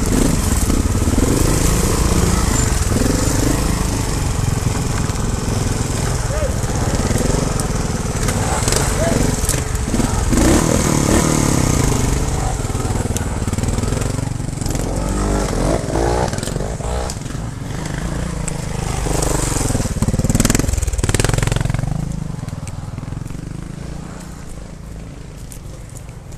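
Trials motorcycle engine running at low revs as the bike descends a rocky trail, with stones crunching and knocking under the tyres and heavy rumble on the helmet-mounted camera. The sound eases off over the last few seconds.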